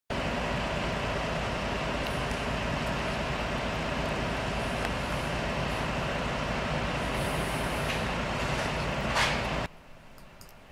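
Steady running of idling heavy emergency-vehicle diesel engines, with a brief louder hiss shortly before the sound cuts off suddenly near the end.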